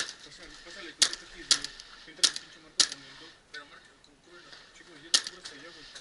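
Paintball markers firing: about half a dozen sharp pops at uneven intervals, with faint distant voices between them.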